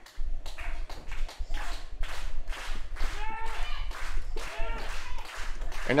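Wrestling match audio: a run of sharp smacks, about three a second, with short high-pitched shouts between them.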